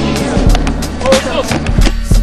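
Hip-hop backing track: a steady beat with a deep bassline and kick drum.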